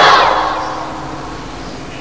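A man's long chanted note from a sermon dies away in a reverberant echo over about the first second, leaving a faint steady hum over a low crowd background.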